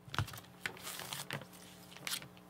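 A clear plastic record outer sleeve being handled: a few light clicks and a brief crinkle.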